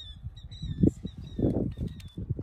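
A small bird chirping again and again in short, slightly falling notes. Uneven low rumbling from wind on the microphone swells about a second in and is the loudest sound.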